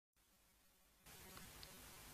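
Near silence: a faint hiss with a low hum, stepping up slightly about a second in.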